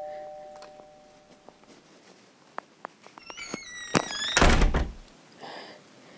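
A two-note doorbell chime fades out over the first second and a half. After a few faint clicks and a short squeak, a single heavy thunk comes about four and a half seconds in.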